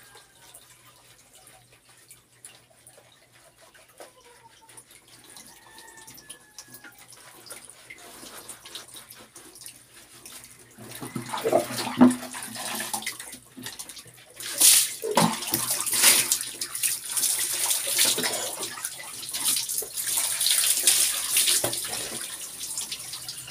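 Soft rubbing of soapy hair, then from about eleven seconds in, water scooped and poured over the body with a plastic dipper, splashing down in repeated pours.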